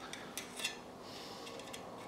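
Faint metal handling: a couple of small clicks about half a second in, then a short soft scrape, as smooth flat-nosed pliers work along the edge of a Hornby tinplate toy locomotive body to straighten bent tin.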